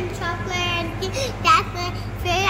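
A young girl's high-pitched voice, talking in a drawn-out, sing-song way, over a steady low hum.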